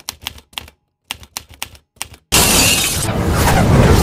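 Typewriter key-strike sound effect, a run of sharp clicks with a short pause about a second in. About two seconds in, a sudden loud crash sound effect cuts in and rings on.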